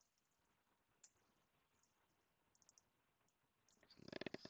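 Near silence with a few faint computer keyboard and mouse clicks as text is typed into a spreadsheet. The clearest click comes about a second in, and a quick run of three comes a little past halfway.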